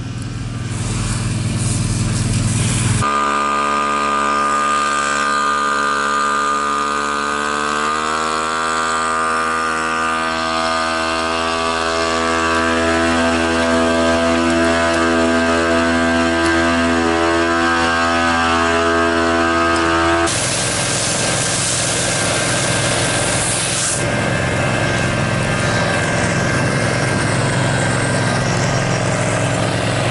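Engines running: a low engine rumble first, then a steady engine hum whose pitch shifts about eight seconds in. From about twenty to twenty-four seconds a loud hissing rush covers it, and engine noise carries on after that.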